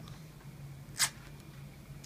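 Rigid strapping tape giving a single short rip about a second in, as a strip is pulled up tight under the arch of the foot.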